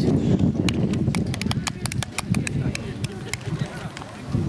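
A quick, irregular run of sharp clicks, about five or six a second, over a low rumble and voices. The clicks stop a little past three seconds in.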